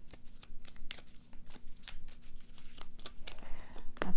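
Tarot cards being shuffled and dealt by hand: a run of quick, irregular papery snaps and slaps as cards are flicked off the deck and laid down on a cloth.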